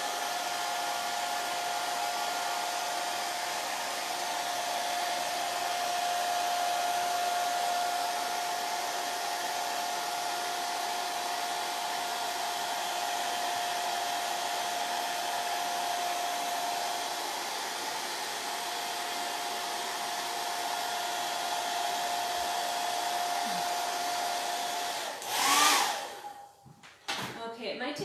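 Handheld hair dryer running steadily on its low setting: an even hiss with a thin steady whine. Near the end it surges briefly louder, then shuts off.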